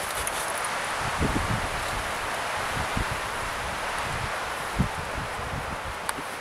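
Steady outdoor wind noise, with a few brief low buffets of wind on the microphone.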